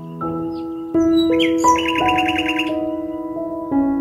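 Slow, soft instrumental background music of sustained held keyboard notes that change every second or so, with a bird's rapid trill of about ten chirps a little under two seconds in.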